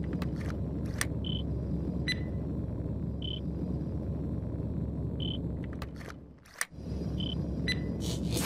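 Electronic sound-effect track: a steady low rumble with short high beeps about every two seconds and a few sharp clicks. The rumble fades out about six seconds in and comes back straight after a click.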